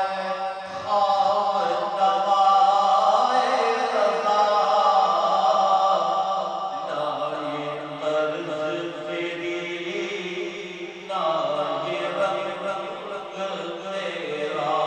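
A man reciting a naat, Islamic devotional poetry in praise of the Prophet, in a chanted melody with long held, ornamented lines sung into a microphone. There are short breaks for breath between phrases.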